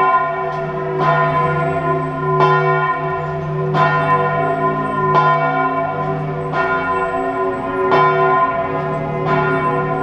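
A large church bell tolling slowly, one stroke about every second and a half, each stroke's hum ringing on into the next.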